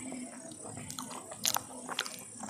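Close-miked chewing of a mouthful of banana, soft and wet, with sharp mouth clicks about one and a half seconds in and again near the end.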